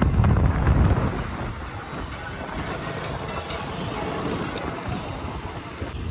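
Road traffic noise with wind buffeting the microphone, louder and rumbling in the first second, then a steady lower hiss.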